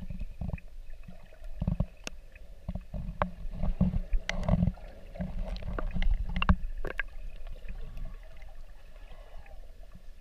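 Underwater sound picked up through a GoPro's waterproof housing: a muffled low rumble that swells and fades unevenly, with scattered sharp clicks and knocks of water moving against the housing.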